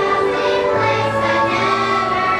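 A children's choir singing in unison with musical accompaniment, holding long steady notes over a low bass line.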